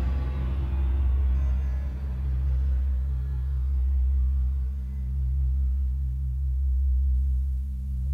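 Electronic music: a deep, steady synthesized drone that swells and ebbs about every three seconds, with higher tones above it dying away in the first couple of seconds.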